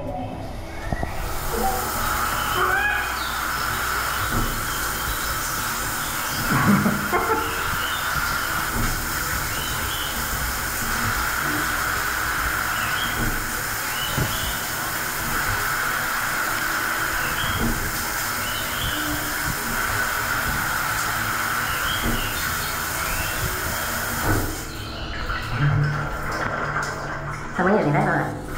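Spa experience shower spraying water in a steady hiss, starting about a second in and cutting off shortly before the end.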